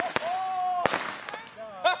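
A bundle of twelve taped-together fireworks going off: a string of sharp cracks spread over the two seconds. Between the bangs a person lets out a drawn-out 'oh'.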